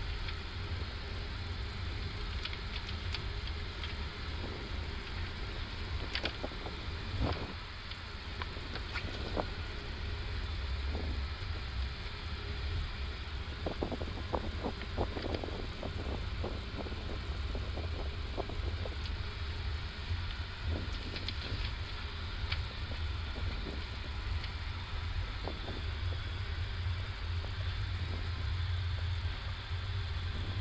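Flight-deck noise of an Airbus A330-200 taxiing with its engines at idle: a steady low rumble, with a few faint clicks and knocks scattered through it.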